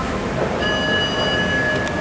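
Schindler 3300 elevator's electronic chime: one held, bell-like tone starting about half a second in and lasting about a second and a half, over a steady background rumble.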